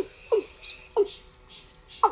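A bird's short call, repeated three times less than a second apart, each call falling sharply in pitch, with faint higher chirps behind it.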